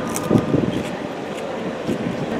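A crisp bite into a small micro cucumber, with a few short crunches in the first half-second, then chewing, over steady outdoor background noise.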